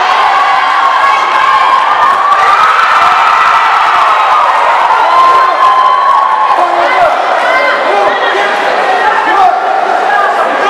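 Boxing crowd shouting and cheering, many voices over one another, with one long held shout about halfway through.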